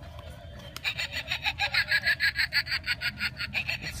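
Animated Halloween prop's recorded cackling laugh, a rapid, very regular pulsing of about eight beats a second. It starts about a second in and stops just before the end.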